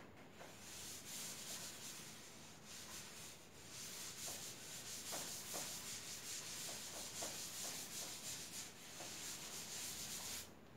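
A chalkboard eraser being wiped across a chalkboard to rub out chalk, in repeated strokes that make a soft scrubbing hiss rising and falling with each stroke.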